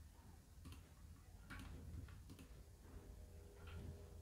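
Near silence: room tone with a low hum and a handful of faint, irregular ticks.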